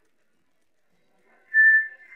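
Silence, then about one and a half seconds in a loud, steady high whistle-like note sounds briefly, the start of a short tune.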